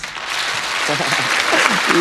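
Studio audience applause right after the song ends, with a voice starting to talk over it about a second in.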